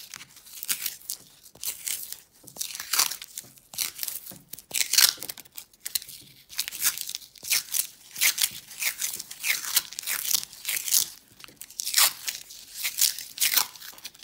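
Paper masking tape being peeled off its roll and wound around a bent wire, in many short, irregular ripping pulls with some crinkling of the tape.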